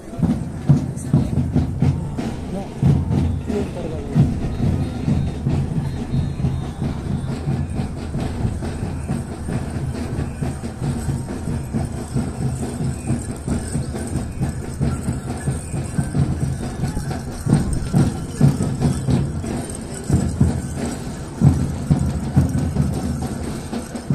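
Loud, muddy mix of music and voices carrying across a stadium during a parade, heard from the stands and dominated by a heavy low rumble.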